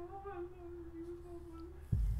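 A steady, held eerie tone from a horror-film trailer soundtrack, cut off by a sudden low thump just before the end.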